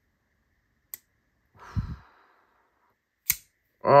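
Two sharp clicks, about two and a half seconds apart, from a CMB Kawanonagare frame-lock folding knife's blade snapping open and shut on its detent, which is described as crispy. A breathy sigh comes between the clicks.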